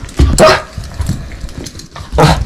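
A small dog barks once, loudly, about a third of a second in.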